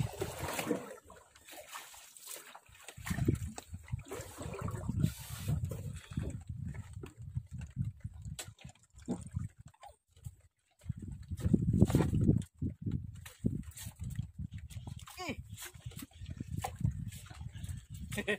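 Sea water sloshing and slapping against the hull of a small wooden boat, in uneven surges with scattered knocks.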